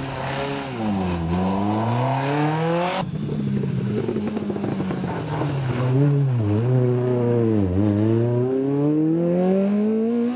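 Two rally car engines in turn, a Citroën C2 and then a Citroën Saxo, driven hard through a tight bend: the revs drop as each car brakes or shifts and then climb as it accelerates away. The sound cuts abruptly about three seconds in from the first car to the second, whose revs dip twice before a long climb.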